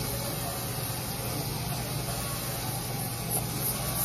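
Steady low mechanical hum with an even background rush, like a motor or fan running continuously.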